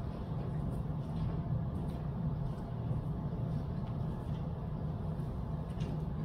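Steady low hum of room background noise, with no speech or singing.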